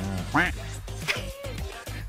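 A man laughing in short bursts over steady background music.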